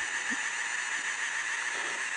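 3D pen's small motor running with a steady whir as it pushes out a line of plastic filament.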